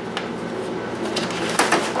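Plastic clicks and knocks from handling a clip-on mini fan as it is unclipped from a stroller and moved, with a louder cluster of knocks near the end.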